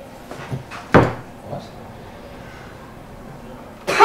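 A single sharp knock about a second in, then quiet room tone.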